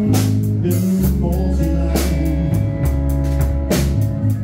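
Live band playing a slow blues-rock ballad: electric bass holding long low notes under electric guitar and a drum kit, with cymbal strikes at the start, about two seconds in and near the end.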